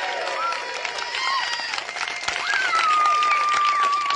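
A small crowd clapping, with cheering voices calling out over the applause and one long, high, held cheer through the second half.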